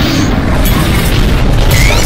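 Loud logo-intro music sting with a deep booming bass under dense, noisy effects, and a rising zing near the end.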